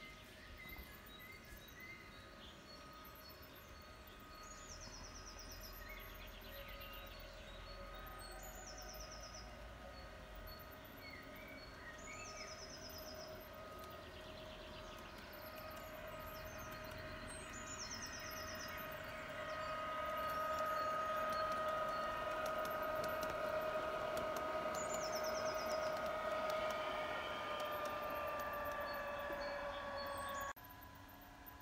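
Garden-railway model electric train running closer, its steady motor and gear whine growing louder about two-thirds of the way in and dropping slightly in pitch near the end as it passes. Short bird chirps repeat every couple of seconds.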